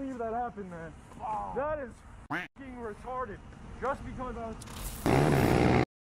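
People's voices talking in the audio of a motorcycle crash video, quieter than the foreground. Near the end comes about a second of loud, rushing noise that cuts off suddenly.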